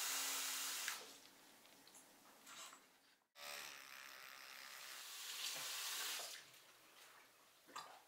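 Bathroom sink tap running: water hissing for about the first second, then dropping away; after a sudden cut a little past three seconds in, the tap runs again for about three seconds while water is splashed over the sink.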